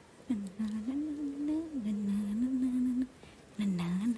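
A person humming a slow tune: long held notes that step up and down, with a short pause near the start and another about three seconds in.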